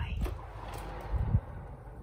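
Built-in oven door pulled open by its handle, with a short low thud a little over a second in as the door swings to its stop, over a steady hiss from the hot oven.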